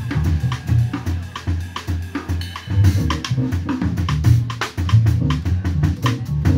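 Live jazz drum kit played with sticks, with busy snare, bass drum and cymbal strikes, over a plucked double bass line whose low notes change about every half second.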